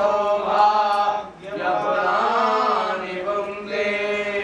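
Sanskrit mantra chanting to Shiva, sung as long held tones, with a short break for breath about a second and a half in.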